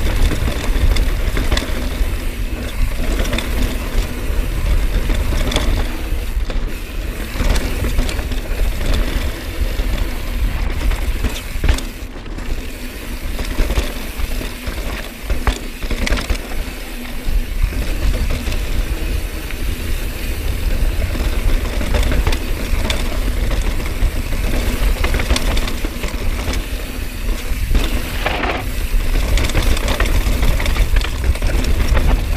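Wind buffeting the camera microphone while a mountain bike descends a dry, rocky dirt trail at speed. The tyres rush over the dirt, and the bike gives frequent sharp clicks and rattles over rocks and bumps.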